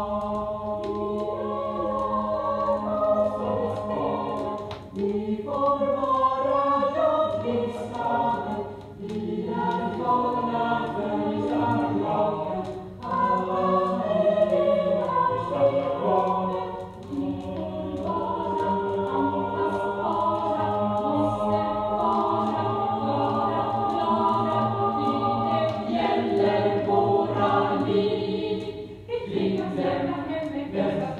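A student choir singing a Swedish song in several voice parts, played from an LP record. The singing goes in phrases, with short breaks every few seconds.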